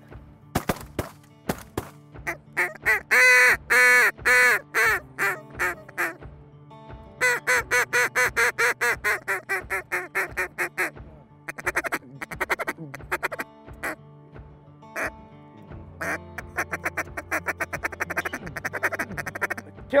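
Duck quacks in rhythmic runs of a few seconds each, the loudest run about three to four seconds in, with a quicker run of calls near the end.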